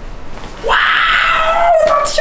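A person's loud, drawn-out high-pitched scream starts just over half a second in and sags slightly in pitch as it is held.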